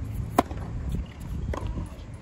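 A tennis ball struck hard with a racket on a forehand, one sharp loud pock about half a second in, followed by a few fainter knocks over a low outdoor background rumble.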